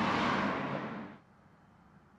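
Steady outdoor background hiss that fades away about a second in, leaving near silence.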